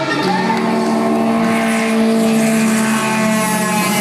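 Live rock band playing loudly through a stadium sound system, recorded from within the crowd: long sustained, distorted notes, with a pitch that bends upward near the start.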